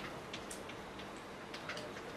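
Several faint, irregularly spaced light clicks over quiet room noise.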